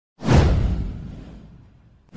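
A whoosh sound effect for an animated intro: it swells suddenly about a quarter second in, with a deep low end under the rush, then fades away over about a second and a half.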